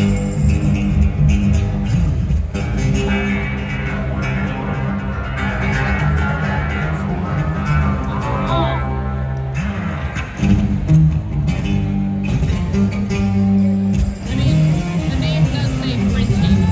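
Live amplified music: an acoustic-electric guitar playing steadily through the PA with a heavy bass end, heard from the audience, with a gliding melodic line, probably vocal, in the middle.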